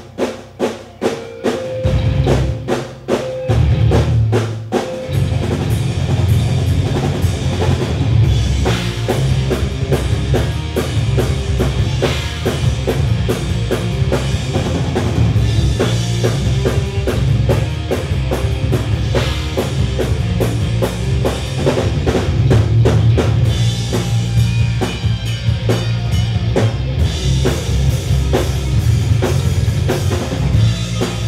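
Live rock band playing loud: drum kit, bass and two Les Paul-style electric guitars. The first few seconds are short stop-start hits with brief gaps, then the band plays on steadily with no singing.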